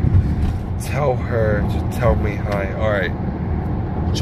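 Steady low rumble of a car cabin, with voices talking over it.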